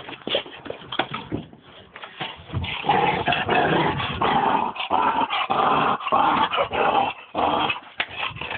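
American pit bull growling as it bites and tugs at a car tyre, with scuffs of the tyre on the ground. The growling starts out broken and becomes loud and nearly continuous about two and a half seconds in.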